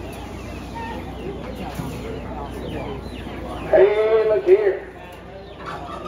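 A rooster crows once, loud and about a second long, about four seconds in, over chickens clucking and the murmur of a crowd.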